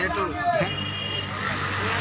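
A steady low engine hum comes in about half a second in, with a short thin high-pitched tone just after it starts, over a noisy outdoor background.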